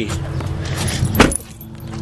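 A steady low hum, then one sharp knock a little over a second in, after which the hum drops away: the pickup's driver door being shut.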